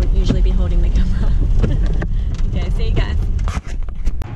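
Steady low rumble of a car's engine and road noise heard inside the cabin, the car crawling at walking pace while towing a large car trailer. Quiet voices talk over it.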